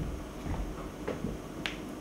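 Scattered light knocks and clicks as chairs are handled and moved about on a stage, with one sharp click near the end.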